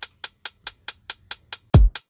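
Background music: an electronic drum beat with quick, even hi-hat ticks about four or five a second and one deep bass-drum hit near the end.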